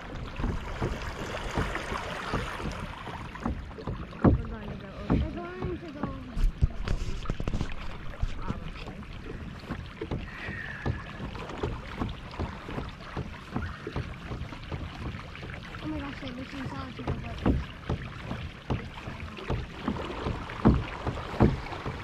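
Water washing and lapping against a moving kayak on calm water, with wind on the microphone and irregular sharp knocks and taps scattered throughout.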